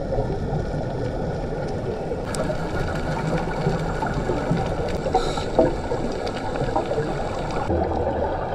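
Muffled underwater noise heard through a GoPro's waterproof housing: a steady low rumble of water. A brighter hiss joins from about two seconds in and drops away shortly before the end.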